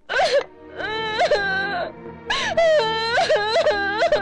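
A woman crying aloud in several long, high wails that rise and fall in pitch, with background music underneath.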